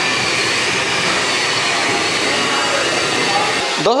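Alphabet-shaped snack pellets deep-frying in a large pan of hot oil, a loud, steady sizzle.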